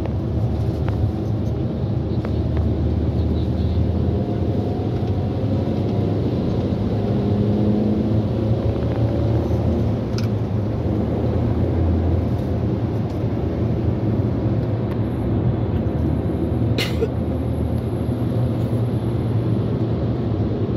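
Steady low drone of engine and road noise heard from inside a car in slow, dense highway traffic, with a single brief click near the end.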